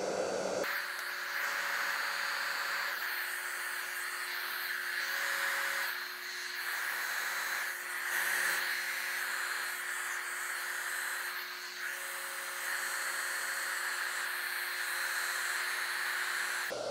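Hair dryer running, a steady rushing hiss of blown air with a faint motor hum beneath, drying wet alcohol ink on linen. It starts about half a second in, and its level dips briefly a couple of times.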